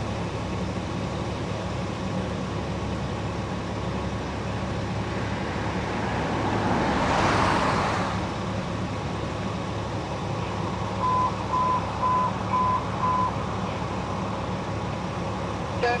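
Steady low hum of idling emergency vehicles. About halfway through, a rushing swell of noise rises and fades. A few seconds before the end come five quick beeps at one pitch, about two a second.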